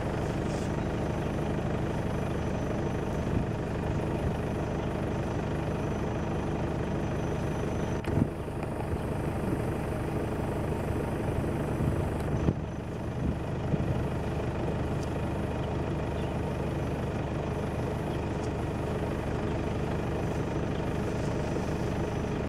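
A car's engine idling steadily, heard from inside the car through an open window, with brief knocks about eight and twelve and a half seconds in.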